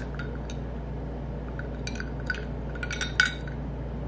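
Ice and a glass straw clinking lightly in a drinking glass, a few small scattered clinks spread across the few seconds.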